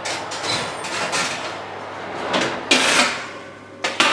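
Knocks and clatter of a domestic oven door and its wire rack being handled as a heated foam PVC sheet is lifted out, with a sharp knock near the end.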